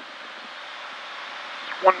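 Steady in-cabin drone of a Cirrus SR20 single-engine piston airplane in cruise, engine at about 2620 rpm, with airflow noise. A man's voice starts just at the end.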